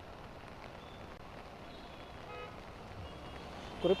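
Steady rain and traffic on a wet city road picked up by a reporter's outdoor microphone, with a brief, faint vehicle horn toot about two and a half seconds in.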